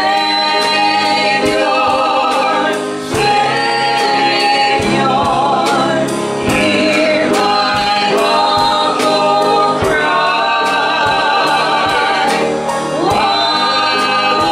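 A gospel hymn sung by men and women together, with a woman's amplified lead voice and long held notes, over a drum kit keeping a steady beat.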